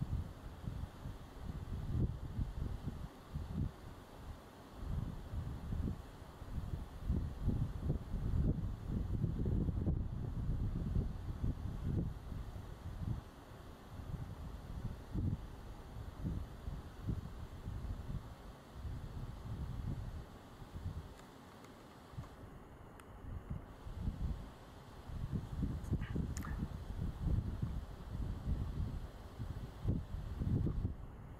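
Wind buffeting a camera microphone outdoors: an uneven, gusty low rumble that rises and falls, with a quieter lull shortly before a faint, brief high sound near the end.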